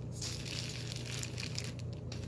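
Clear plastic bag crinkling and rustling as it is handled around a shampoo bottle, a continuous rustle with small scattered crackles.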